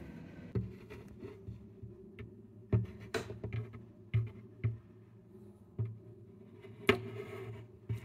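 Irregular knocks and handling bumps from a camera being moved around inside the body of an Epiphone Hummingbird Pro acoustic guitar, about nine in all, over a faint steady low hum.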